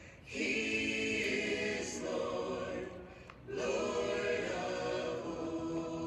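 Congregation singing a hymn a cappella in unaccompanied harmony. The phrases break twice with short pauses, at the very start and about three seconds in.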